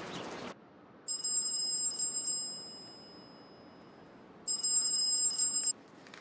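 A phone ringing twice, each ring a rapid high trill about a second long, a few seconds apart. The first ring fades out slowly.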